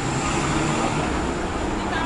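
City street ambience: steady traffic noise from passing vehicles with indistinct voices of passers-by.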